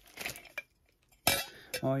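Small hard objects handled close to the microphone: a few short clatters and knocks, the strongest about a second and a half in.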